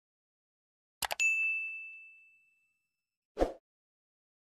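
Sound effects of a subscribe-bell animation. A quick double click is followed by a single high bell ding that rings and fades over about a second and a half, then a short swish near the end.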